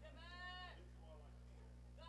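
A faint, drawn-out voice calling out from the stands, once in the first second, over a steady low electrical hum.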